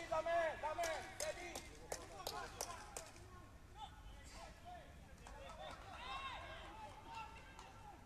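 Faint voices calling out, in short bursts through the first three seconds and again later, with several sharp clicks or knocks in the first three seconds.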